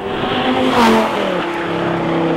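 Supercharged Lamborghini Gallardo LP560-4's V10 engine running hard at high revs. It is loudest about a second in, then its pitch drops a little and holds steady.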